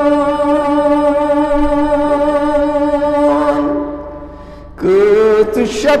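Male voice singing a naat: a long held note fades out about four seconds in, and a new line begins near the end with a wavering pitch.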